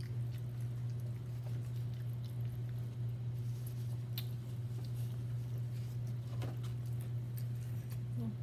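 Eating sounds at the table: chewing with a few light clicks of a fork on a plate, over a steady low hum.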